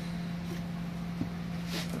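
A steady low hum with a faint hiss behind it, holding one pitch throughout, and a short breath near the end.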